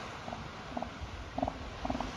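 Northern elephant seal calling in a series of short grunting pulses, about two a second, with wind rumble on the microphone rising near the end.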